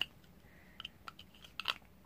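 Plastic toothbrush and small toothpaste tube being handled: a few light clicks and taps, the sharpest one about three-quarters of the way through.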